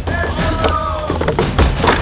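Background music with a few dull thuds, sandbags thrown at a table of stacked target blocks.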